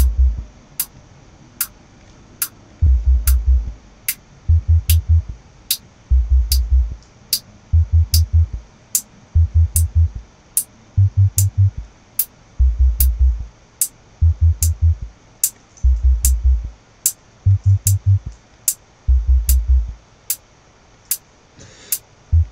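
Electronic drum-machine loop at 148 BPM playing from Reason: a hi-hat ticking on every beat over a repeating pattern of short, deep bass notes. The hi-hat is being shaped with a parametric EQ as it plays.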